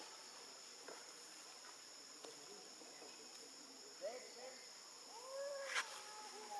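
Steady chorus of forest insects holding two high pitches. Near the end come a few short rising-and-falling animal calls and a sharp click.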